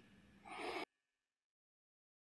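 A man's short, faint breath, once, about half a second in.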